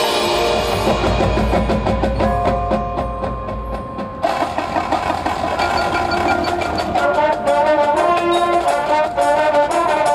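High school marching band and front ensemble playing their field show: a low rumble under held notes for the first few seconds, then fuller brass chords come in suddenly about four seconds in, with a quick, even percussion rhythm in the second half.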